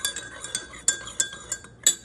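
Metal spoon stirring coffee in a ceramic mug, clinking against the side in quick irregular taps that ring briefly, the loudest near the end.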